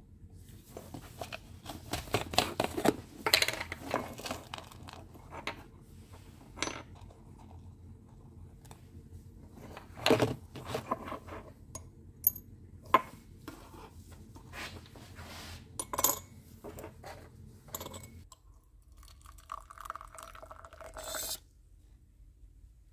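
Scattered clinks and taps of steel tweezers, a plastic jar and a small glass beaker being handled, as lumps of potassium sulfide (liver of sulfur) are picked out and dropped into the glass. Near the end, about two seconds of liquid being poured into the beaker.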